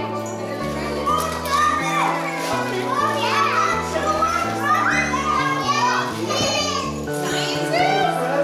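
Children's voices chattering and calling out over music with a bass line that steps from note to note.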